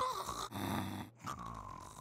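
A sleeping cartoon dog snoring: a snore drawn in about half a second in, then a softer breath out. It is the sign that she is still asleep.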